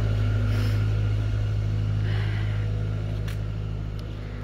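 Steady low engine hum of road traffic, easing slightly toward the end.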